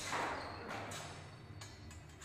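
A few faint taps and scuffs from longsword sparring: footwork on a wooden parquet floor and light contact between steel practice swords.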